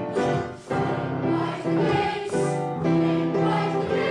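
Boys' church choir singing a passage of held notes in short phrases, with brief breaks for breath between them.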